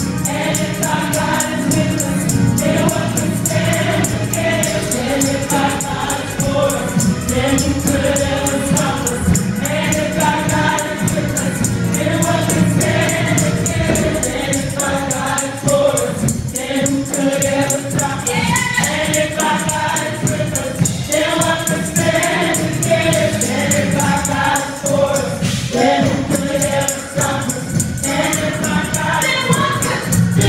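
A gospel praise team of several singers on microphones singing together over amplified accompaniment with a steady beat.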